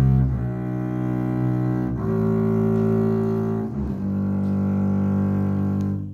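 Double bass played with a bow, sounding slow notes of a three-octave G major scale. Three long notes of about two seconds each, changing cleanly from one to the next.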